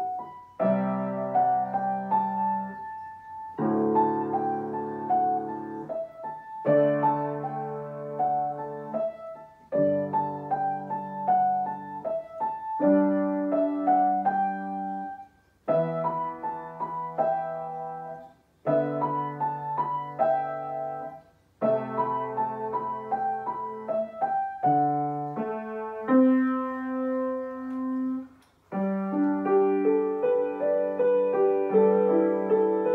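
Acoustic grand piano playing a slow classical-style piece, in phrases about three seconds long, each cut off by a short pause before the next begins.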